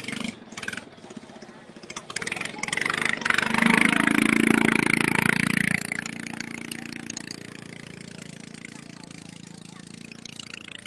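Small longtail boat engine revving hard for about two and a half seconds, a few seconds in, then running on at a steadier, quieter drone. A few knocks and bumps come before it.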